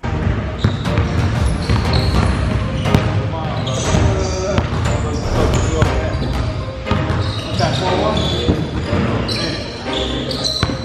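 A basketball being dribbled on a hardwood gym floor, repeated bounces, with voices talking in the background.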